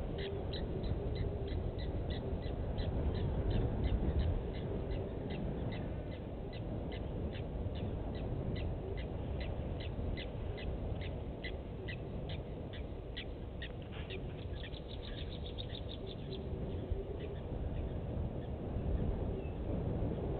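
A bird calling a long series of short, high, evenly spaced notes, about two a second. Near the end they quicken into a rapid run and then stop. A steady low rumble lies under the calls.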